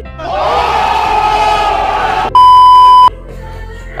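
A swelling two-second burst of edited-in music with a crowd-like shout, cut off by a loud, steady, single-pitched bleep of about three-quarters of a second, like a censor beep.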